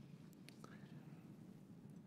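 Near silence: faint room tone, with a faint click about half a second in.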